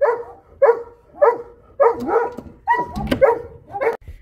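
A dog barking at a fox outside the window: a steady run of short barks, nearly two a second.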